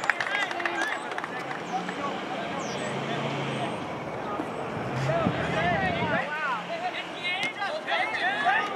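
Players and sideline voices shouting and calling across an outdoor soccer field, with a cluster of shouts near the end. Under them a low engine hum comes in about two seconds in and stops about six seconds in.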